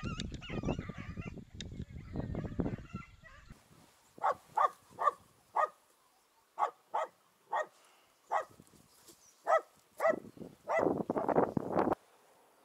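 Wind rumbling on the microphone for the first three seconds or so. Then a dachshund barks into a burrow entrance: about ten short, sharp barks at uneven spacing. A loud burst of wind or handling noise comes near the end.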